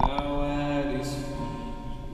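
Live rock-style worship band playing: a sharp drum hit at the start, then a held chord ringing out, with a cymbal wash coming in about halfway through.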